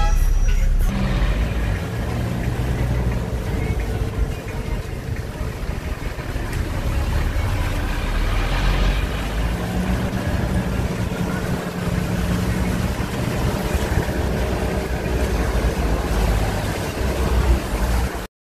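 Street traffic on a bridge: car and minibus engines running and passing in slow-moving traffic, with a steady low rumble and an engine hum that swells in the middle.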